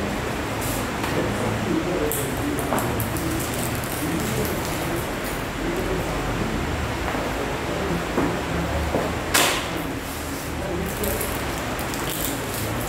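Steady hiss and low hum from a faulty microphone and audio setup, with scattered clicks and knocks, the sharpest about three quarters of the way through, as the setup is adjusted.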